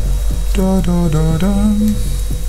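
A man humming a short tune in held notes that step up and down in pitch.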